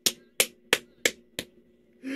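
Five sharp knocks struck at an even pace, about three a second.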